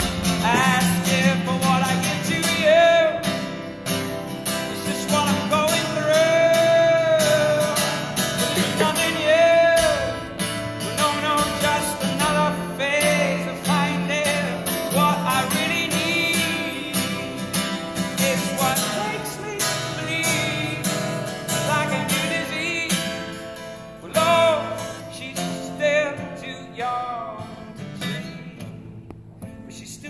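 Live acoustic performance: a man singing long, wavering lines over his own acoustic guitar, heard from the audience. The music grows quieter near the end.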